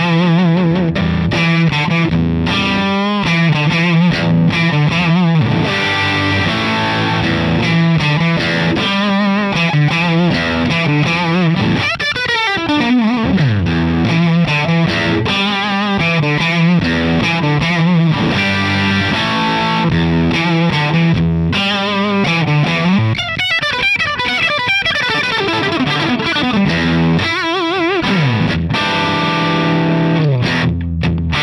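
Suhr Custom Classic electric guitar played through a Ceriatone Prince Tut, a Princeton Reverb-style tube combo, into a 2x12 open-back cabinet. With the amp's volume at 3 o'clock it is breaking up into light overdrive. It plays chords and lead lines with vibrato and several long pitch slides.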